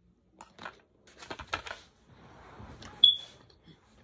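Eating and handling noises: small clicks and rustles from a plastic spoon and a plastic drink cup. About three seconds in there is a short, high-pitched clink that rings briefly, the loudest sound.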